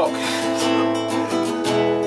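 Acoustic guitar strummed steadily, chords ringing on between strokes.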